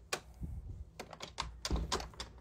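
Handling noise from a hand-held phone: a quick, irregular run of clicks and taps, with a heavier thump near the end.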